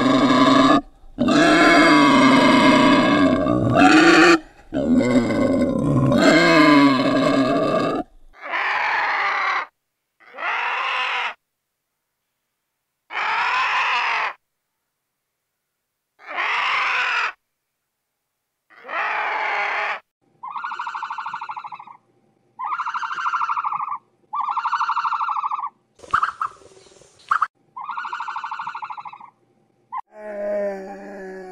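Wild boar grunting and squealing for about the first eight seconds. Then comes a string of about ten separate animal calls, each about a second long with silence between them, the last five shorter and higher.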